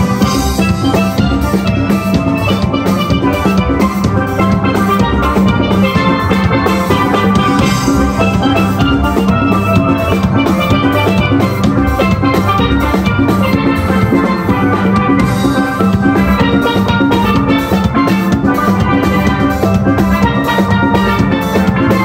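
Steel band playing: a group of steel pans ringing out melody and chords together over a steady drum beat.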